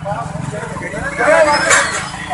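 Raised voices in a heated argument, loudest in the second half, over the steady noise of street traffic with passing motorcycles.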